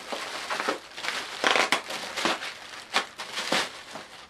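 Plastic bubble wrap crinkling and crackling as hands pull it open and slide a boxed camera out of it, with many sharp crackles.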